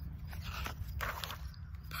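Paper of a picture book rustling and scraping as its page is handled and turned, with a few short rustles in the middle.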